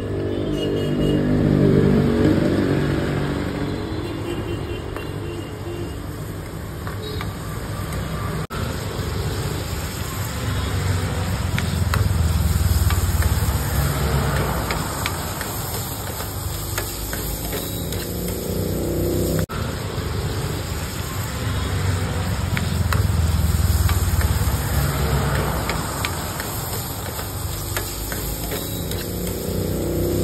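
Paneer cubes and chopped onion frying in oil in a steel pan, sizzling under a low roar that swells and fades about every eleven seconds, with light clicks from a metal ladle scraping the pan.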